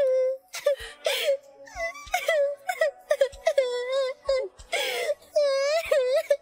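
A girl crying hard: a string of high wailing sobs, each bending up and down, broken by short catching breaths.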